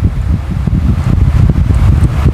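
Loud low rumble of wind buffeting a clip-on microphone, fluttering unevenly.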